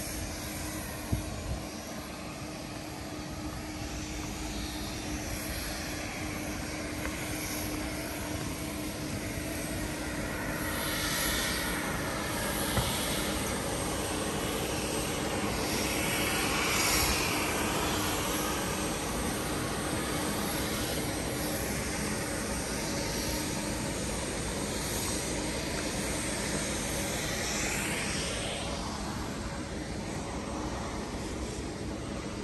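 Jet airliner engines running on the airport apron: a steady drone with a low hum under it, swelling louder briefly about halfway through.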